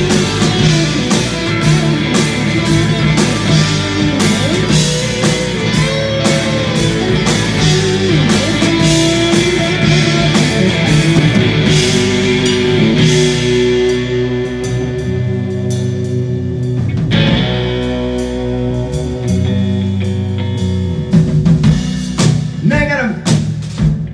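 Live rock band playing an instrumental break: two electric guitars over a drum kit, with lead guitar lines gliding in pitch. About fourteen seconds in, the drums and cymbals thin out while the guitars carry on, and the drums come back in hard near the end.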